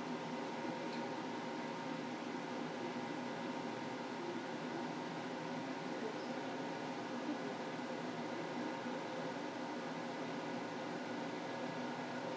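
Steady hum of a kitchen range hood fan: a constant hiss carrying several unchanging whining tones.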